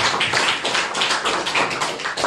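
Applause from a small audience, many hands clapping at once.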